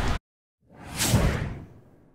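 The room sound cuts off abruptly. After about half a second of silence, a whoosh sound effect swells up and fades away over about a second, the transition sound of an animated logo outro.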